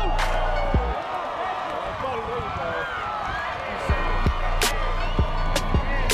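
Background music: a song with a vocal over a beat of deep bass and drums. The bass and drums drop out about a second in and come back about four seconds in, while the vocal carries on.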